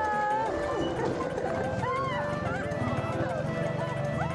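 Busy fish-market bustle with untranscribed voices calling out, under background music.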